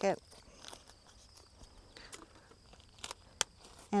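Faint handling sounds of a foil lure wrapper being folded and rubber gloves being taken off, with a few sharp clicks, two of them close together a little after three seconds. Crickets chirr faintly and steadily underneath.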